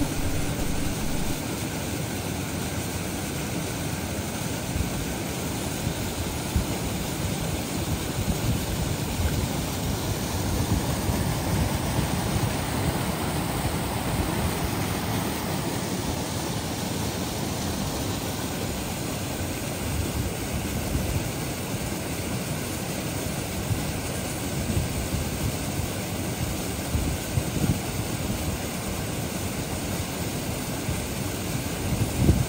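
Shallow rocky stream running over stones and down a small cascade: a steady rush of water.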